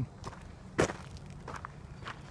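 Footsteps crunching on a gravel road: a few steps, the loudest a little under a second in.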